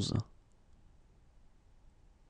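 A voice finishing the French number 'quatre-vingt-onze' in the first quarter second, then near silence with faint room hiss.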